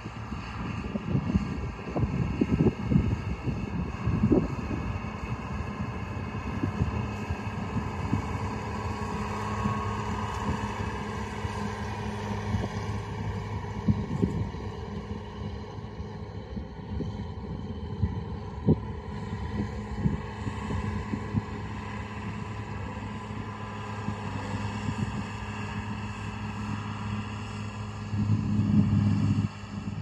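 John Deere 4955 tractor's six-cylinder diesel engine running steadily under load as it pulls an air drill, a low even drone with a few brief thumps. It grows louder near the end.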